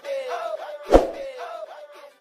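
Soundtrack audio of short, warbling tones that bend up and down about three or four times a second, with one sharp thump about a second in.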